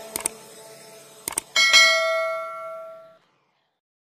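Subscribe-button animation sound effect: a few sharp mouse clicks, then a notification-bell ding that rings out and fades over about a second and a half.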